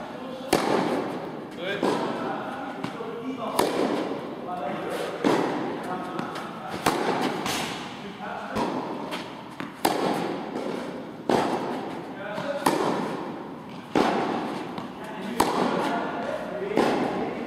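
A tennis rally on an indoor court: a sharp pop of racket on ball about every second and a half, each with a short echo off the hall.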